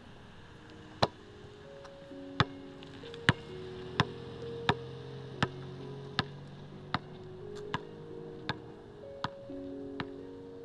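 A basketball being dribbled on pavement, with sharp bounces about every three-quarters of a second that grow gradually fainter. Soft sustained music chords play underneath.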